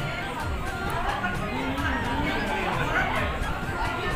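Several women's voices chattering over one another, with music playing underneath.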